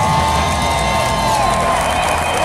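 Large stadium crowd cheering, with long held whoops rising above the noise of the crowd.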